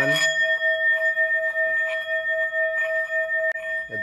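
Hand-held Tibetan-style metal singing bowl ringing on after being played with a wooden mallet: a steady tone with a higher overtone above it, easing slowly. A small click sounds near the end.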